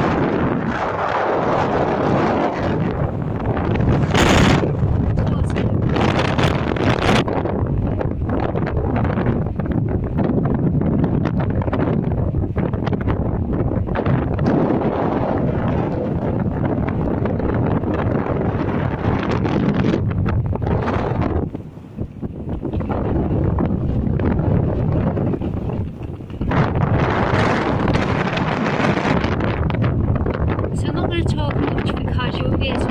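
Blustery wind buffeting the phone's microphone: a loud, gusting noise, strong enough to drown out speech, that dips briefly twice about two-thirds of the way through.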